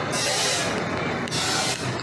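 Steady hiss of compressed air at a Blue-Point AT5500C pneumatic impact wrench, growing brighter twice, once early and once near the end.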